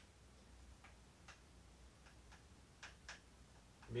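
Faint, irregular ticks and short scratches of a marker tip writing on a whiteboard, a few strokes spaced roughly half a second to a second apart, over near silence.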